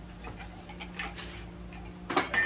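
Faint, irregular light clicks and taps of glazed pottery mugs being handled and set down, over a steady low hum.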